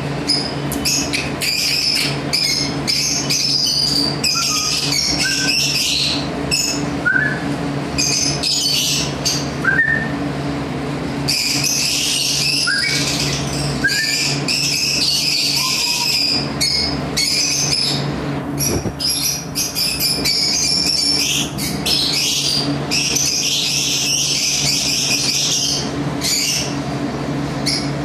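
Many small birds chirping and chattering almost without pause, with a few short rising chirps, over a steady low hum.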